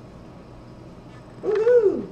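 Quiet room, then near the end one short drawn-out vocal 'ooh' from a person, its pitch rising and then falling.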